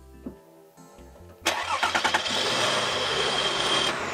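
Car engine starting suddenly about a second and a half in, then running steadily, over soft background music. It starts once its loose battery terminal has been tightened.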